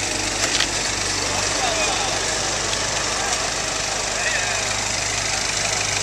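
A vehicle engine idling steadily, with a couple of light knocks about half a second in.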